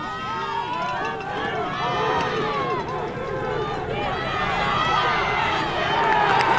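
Football crowd in the stands shouting and yelling over one another while a play runs, getting a little louder toward the end.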